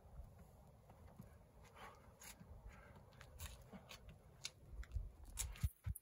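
Faint scuffs and scrapes of a climber's shoes, hands and clothing against granite as he moves up a boulder, getting more frequent and louder in the second half, over a low rumble.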